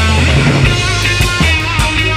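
Live rock band playing: electric and resonator guitars over a bass guitar line, with drum hits keeping a steady beat.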